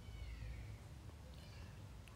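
Faint high-pitched animal calls that glide downward, one lasting about half a second at the start and a shorter one about one and a half seconds in, over a low steady hum.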